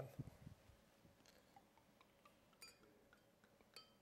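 Near silence: sparkling wine being poured into a thin glass champagne flute, faint, with two light clinks of glass in the second half.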